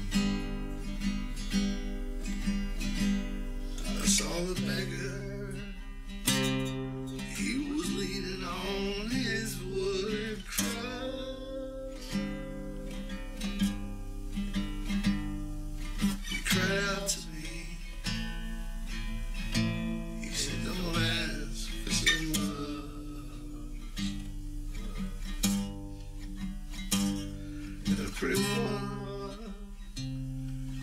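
Acoustic guitar strummed and picked through an instrumental passage of a slow folk song, with a wavering melodic line over the chords at times and a steady low hum underneath.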